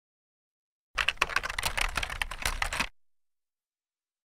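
Computer keyboard typing: a quick, dense run of key clicks starting about a second in and lasting about two seconds.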